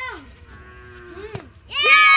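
A plastic bottle dropped onto hard dirt lands with a single light knock, and moments later children burst into a loud, long, high-pitched shout of celebration because it has landed standing upright.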